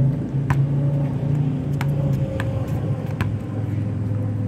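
Steady low hum of an idling motor vehicle, broken by a few sharp knocks of a basketball striking the rim and bouncing on an outdoor court, the first about half a second in and the rest spaced through the second half.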